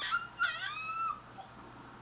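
Baby's high-pitched squealing vocalisation: two short gliding calls in the first second, then quiet.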